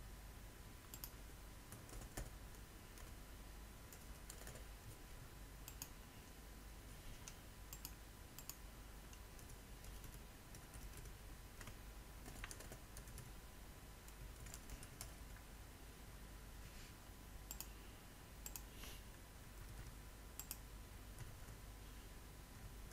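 Faint computer keyboard typing and clicking in irregular, scattered strokes, some in quick little runs, over a faint steady hum.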